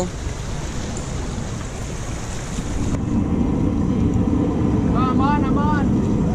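Steady noise of wind on the microphone and sea washing against the jetty rocks, turning louder and lower from about three seconds in. A short voice sounds near the end.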